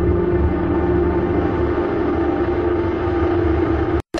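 Low, steady rumble under a sustained droning tone: an ominous documentary sound bed.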